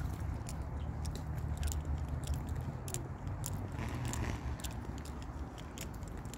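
Footsteps on a paved path: irregular sharp clicks and scuffs, with a brief scuff about four seconds in, over a low steady rumble.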